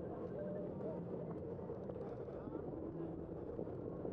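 Street traffic noise heard from a moving bicycle: a steady low rumble, with people's voices faintly mixed in.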